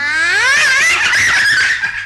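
A young girl's high voice giggling and laughing, with a steady low hum underneath.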